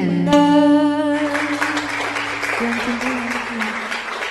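A woman's voice holds the final note of a Vietnamese tân cổ song over instrumental accompaniment, breaking off about a second in. Audience applause follows while the accompaniment's last low notes linger and fade.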